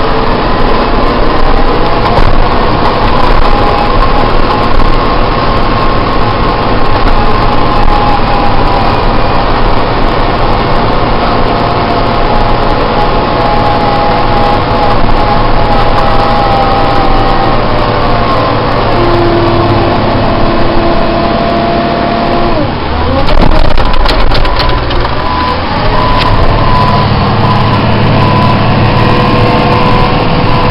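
Wheel loader's diesel engine running steadily under load while pushing snow, heard from inside the cab. A little past two-thirds through, its pitch drops and then climbs again as it gets louder.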